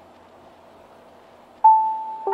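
Ambient background music: soft held tones, then a single bell-like note struck near the end that rings on.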